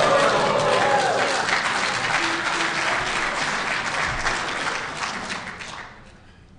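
A conference audience applauding, with a few voices whooping in the first second or so. The clapping dies away near the end.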